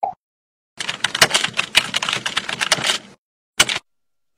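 Typing sound effect: a rapid run of keyboard key clicks lasting about two seconds, followed by a single separate click near the end.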